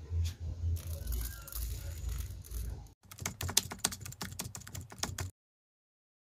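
Dry dyed rice grains being sprinkled, a rapid patter of tiny clicks starting about halfway through and cutting off suddenly near the end; before it, only a low rumble.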